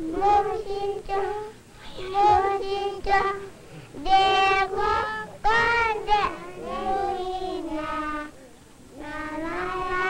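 Children singing a song in phrases of long, steady notes, with short pauses between phrases.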